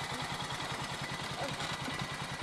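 ATV engine idling steadily.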